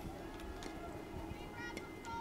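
Quiet outdoor softball-field ambience: low background noise with faint, distant voices and a few soft ticks.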